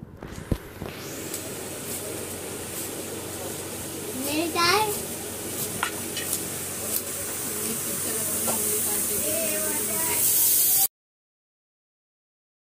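Knife cutting through fresh leafy greens on a granite slab: scattered crisp cuts over a steady hiss that slowly grows louder. A child's voice rises briefly about four seconds in, and the sound cuts off suddenly near the end.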